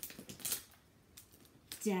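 Paper picture card being handled and pressed onto a whiteboard: a few short taps and rustles in the first half-second, then quiet.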